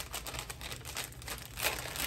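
Plastic crinkling and rustling in irregular bursts as items are handled, a little louder near the end.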